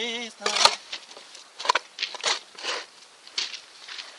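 A shovel digging into soil and debris: a sharp knock of the blade about half a second in, then several short, separate scrapes.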